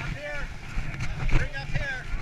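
Several people's voices, not in clear words, over a low rumble of wind on the microphone.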